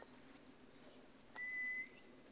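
A single short whistled note, one clear steady pitch rising slightly, about half a second long, near the end: a whistle to call the dog.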